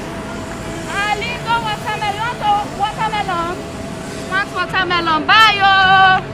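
A woman's high-pitched voice calling out in a run of short, sing-song cries, a street hawker crying her wares, loudest near the end. A steady hum of street traffic runs underneath.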